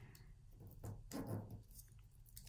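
Faint paper rustle and light taps as a glue dot is peeled from its backing and pressed onto a sheet of craft paper.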